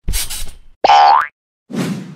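Cartoon sound effects for an animated logo: a short rushing whoosh, then a loud rising boing about a second in, then a low thud that fades out near the end.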